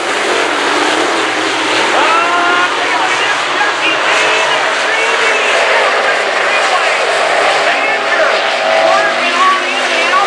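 A pack of modified dirt-track race cars running laps, their V8 engines making a loud, steady, continuous racket as they circle the track.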